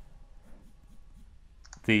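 Quiet room tone with a few faint clicks, then a man's voice begins near the end.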